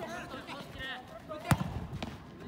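A football kicked hard once, a sharp thud about one and a half seconds in, among players' shouts.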